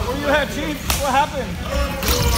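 Wheelchair tyres squeaking on a hardwood court floor in quick, short chirps, with one sharp slap a little under a second in.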